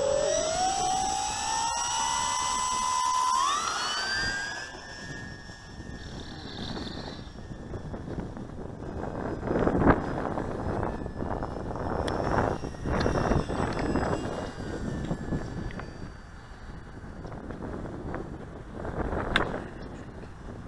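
Electric motor and propeller of an E-flite P-51 Mustang ASX model plane throttling up in a whine that climbs steeply in pitch over the first four seconds, then drops back to a fainter whine that drifts in pitch as the plane flies off. Gusts of wind hit the microphone in the middle and later part, and there is a brief sharp high chirp near the end.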